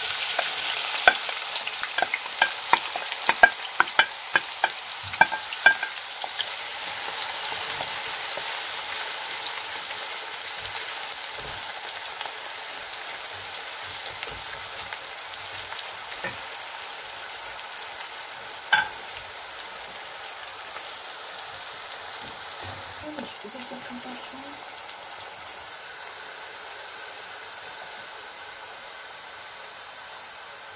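Chopped onions sizzling as they fry in hot oil in an aluminium pot. The sizzle is loudest at the start, just after the onions go into the oil, and slowly dies down, with a quick run of sharp clacks from the stirring utensil against the pot in the first few seconds and one more later.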